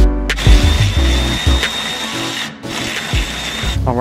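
Background music with a heavy bass line, over a power tool's steady high-pitched whine that starts just after the beginning and stops shortly before the end.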